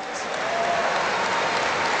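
Audience applauding: an even wash of many hands clapping that swells slightly just after it starts.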